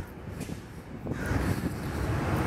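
Outdoor street noise: a low traffic rumble with wind buffeting the microphone, and a passing vehicle growing louder about a second in.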